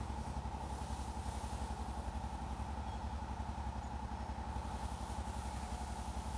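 A small engine idling steadily, with a fast, even throb and a steady hum.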